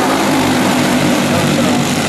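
A pack of racing karts running together at speed, their small engines making a steady, many-layered buzz. A race announcer's voice is heard faintly over the top.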